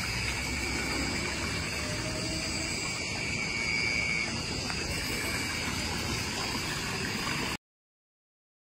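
Outdoor night ambience: a steady wash of running water with a high, steady insect trill over it, cutting off suddenly near the end.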